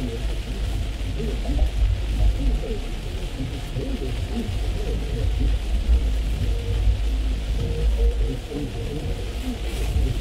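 Car cabin in heavy rain while driving: a steady hiss of rain and tyre spray over a low road rumble.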